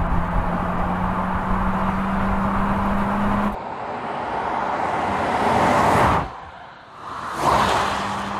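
Audi Q8 TFSI e plug-in hybrid SUV driving: a steady hum whose tone creeps slowly upward for the first few seconds. Then the car approaches and passes with a swelling rush of tyre and road noise that cuts off suddenly, followed by a second quick pass-by near the end.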